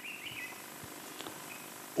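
A bird chirping faintly in a few short high notes, one sliding down in pitch, with another faint chirp later, over quiet outdoor background noise.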